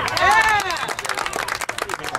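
A voice calls out at the start, then scattered hand claps from several people begin about half a second in and go on irregularly.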